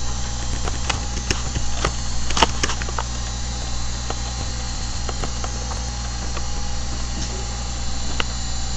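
Sharp computer mouse clicks and a few keyboard key presses, most of them in the first three seconds, over a steady electrical hum and hiss picked up by the microphone.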